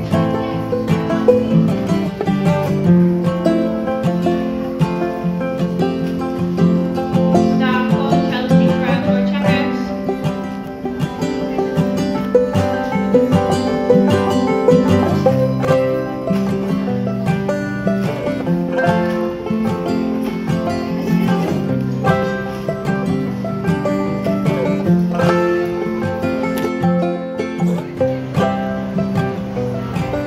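Background music led by plucked string instruments, running continuously with many quick notes.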